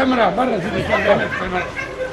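Several men's voices talking over one another, too mixed to make out words.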